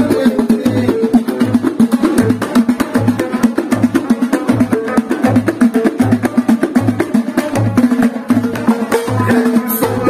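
Moroccan Abda-style folk ensemble playing an instrumental passage: frame drums keep an even low beat about twice a second, with fast hand slaps and a small clay hand drum filling in between over a plucked watra lute. Singing comes back in near the end.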